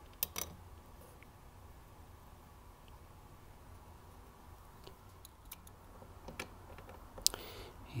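A few faint clicks and taps of a screw being handled and started by hand in a metal bracket, with one sharper click near the end.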